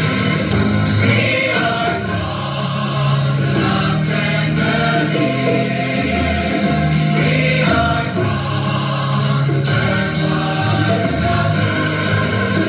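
Recorded choir singing church music: slow, sustained sung lines that move from note to note every second or two.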